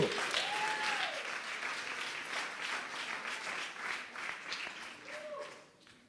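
Church congregation applauding, with a couple of brief calls from the crowd, the clapping dying away near the end.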